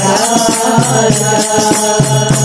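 Hindu devotional bhajan to Shiva: singing over held instrumental tones, with a quick steady beat of jingling hand percussion.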